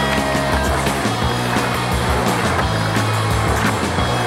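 Music with a steady bass line, and under it skateboard wheels rolling on concrete, with a few sharp clicks from the board.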